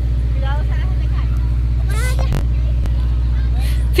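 Ice cream truck's engine idling with a steady low hum, with faint voices over it.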